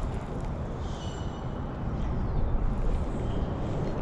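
Steady low rumble of road traffic, with a faint brief high thin sound about a second in.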